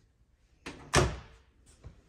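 A painted panel closet door being swung shut: a short swish, then a solid thud as it closes about a second in, followed by a lighter click near the end.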